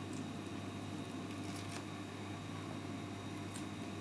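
Faint soft squishes and small ticks of a ripe avocado's skin being peeled off the flesh by hand. The skin coming away easily is the sign of a perfectly ripe avocado.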